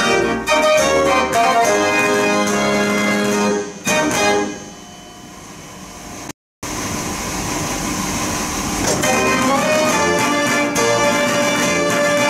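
A Mortier dance organ playing a tune that ends about four seconds in, its last notes dying away in the hall. After a short break the organ begins a new piece, building up again.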